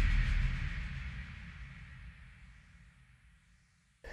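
Decaying tail of a deep, booming cinematic impact sound effect marking a title card. It fades steadily to silence over about three and a half seconds.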